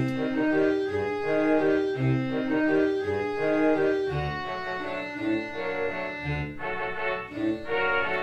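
Playback from Finale notation software of a concert band score in progress, in sampled instrument sounds. Clarinets and alto saxophones carry a sustained melody over low bass notes that fall about once a second.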